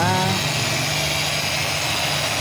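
Corded electric car polisher with a foam pad running steadily against a car door's ceramic-coated paint, a continuous motor hum.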